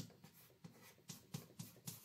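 Chalk writing numbers on a chalkboard: a string of short, faint strokes and taps, about three a second.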